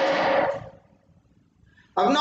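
A man's voice trailing off on a drawn-out spoken word, then about a second of near silence, room tone only, before his voice starts again at the very end.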